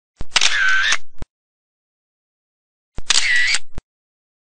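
Camera shutter sound effect, played twice. Each plays about a second long, opening and closing with a sharp click: once just after the start and again about three seconds in. There is dead silence in between.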